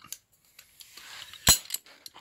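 Faint rustling of handling, then a single sharp metallic click about a second and a half in, with a few light ticks after it.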